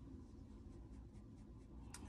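Faint, quick swishing strokes of a makeup brush on the skin of the forehead, about four a second, with a sharper tick just before the end.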